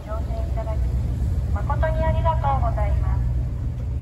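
Steady low rumble of the Garinko III drift-ice sightseeing ship's engines under way as it moves away from the quay through drift ice.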